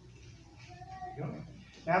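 A brief pause in a man's amplified speech: near-quiet room tone with a faint, short high tone about halfway through, then his voice returns just before the end.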